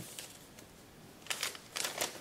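A folded sheet of kraft paper being handled and opened out, crinkling and rustling in a few short bursts during the second half.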